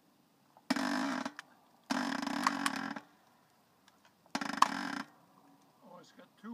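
Manual hydraulic log splitter being pumped in high gear: three pump strokes, each a harsh rush of sound lasting half a second to a second with a few clicks in it. With little resistance left in the log, the piston travels faster on each stroke.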